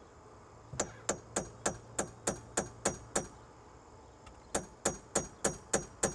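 A hammer lightly tapping a center punch against stainless steel dodger-frame tubing, about four quick metallic strikes a second in two runs with a short pause between. The punch is making a divot so the drill bit won't wander.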